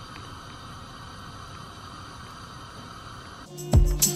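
Faint steady hiss from a gas hob burner heating a covered steamer pot, with no rhythm or change. Background music with plucked guitar starts near the end.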